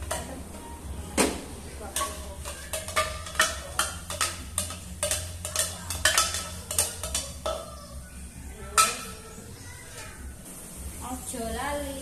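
A spoon clicking and scraping against a plastic container held over a wok, a run of sharp clicks about twice a second for several seconds, as a seasoning is scooped and tapped out into the pan.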